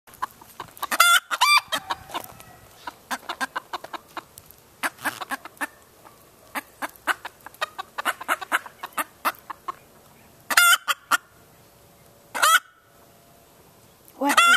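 Hen's alarm call: a long run of short, repeated clucks, broken by louder, higher squawks about a second in and twice more past the ten-second mark. It warns that a predator is nearby.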